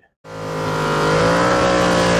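Car engine revving and held near one pitch, rising slightly: it swells in over about half a second and then holds steady.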